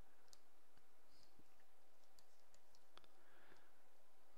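Faint, scattered clicks and taps of a stylus working on a graphics tablet, a handful spread over a few seconds, over a low steady hiss.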